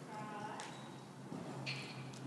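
Hoofbeats of a horse trotting loose in an indoor arena, with a brief voiced call in the first half second.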